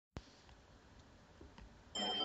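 Near silence with faint hiss, broken by a single sharp click just after the start. Music begins right at the end.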